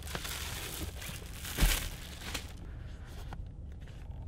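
Clear plastic shrink wrap being torn and crumpled off a laptop box. The crackling is loudest at a sharp rip about a second and a half in, then dies down to faint rustling after about two and a half seconds.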